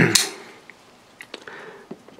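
Faint handling of a cardboard shipping box: a few light taps and clicks, about a second in and again near the end.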